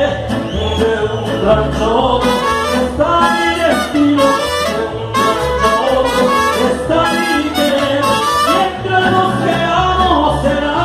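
Live mariachi band playing a ranchera, with trumpets and violins over strummed guitars and a guitarrón bass keeping a steady beat.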